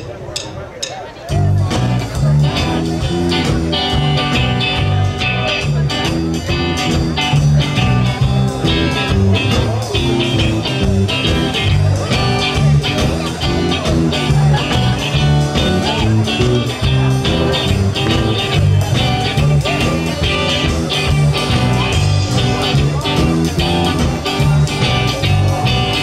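Live rock band of electric guitar, bass guitar and drum kit playing a song. It opens with a few sharp clicks, then the full band comes in about a second in with a steady beat.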